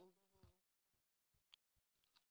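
Near silence in a pause between recited phrases, with the faint tail of the reciter's voice dying away in the first half second.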